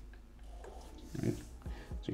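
A man's short non-speech vocal noise about a second in, followed by two fainter ones, over faint hiss.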